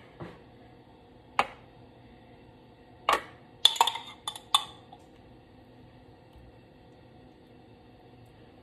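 Utensil clinking against a glass jar and a baking pan: two single clinks in the first two seconds, then a quick cluster of about five between three and five seconds in.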